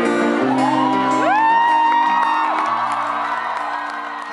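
Acoustic guitar's final chords ringing out at the end of a live song, with two long, high whoops from audience members rising over it about half a second and a second in. The sound fades near the end.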